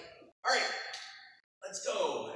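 A man's voice speaking in two short phrases, with drops to dead silence between them.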